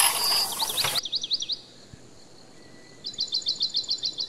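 Tap water running onto a plate for about the first second, stopping abruptly. A bird is chirping throughout, ending with a quick series of about eight short chirps a second near the end.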